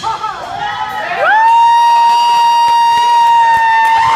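Electric guitar playing a few short bent notes, then sliding up into one long sustained note about a second in, held steady as the closing note of the solo, with a crowd cheering underneath.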